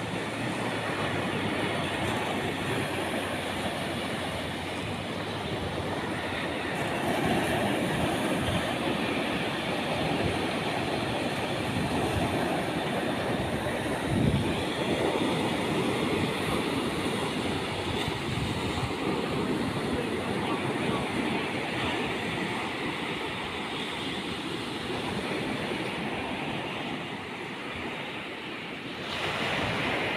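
Surf washing onto a sandy beach, a steady rush of small breaking waves, with wind buffeting the microphone and a brief thump about halfway through.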